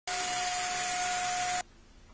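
Shark Navigator upright vacuum cleaner running on carpet: a steady rush of air with a steady motor whine. It cuts off suddenly about one and a half seconds in.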